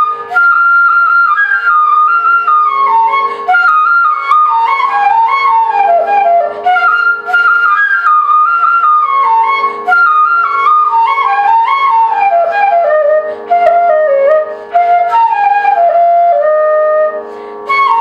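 Transverse bamboo flute playing a Carnatic melody in phrases that step downward from high to low notes, with short breath breaks between phrases, over a steady drone.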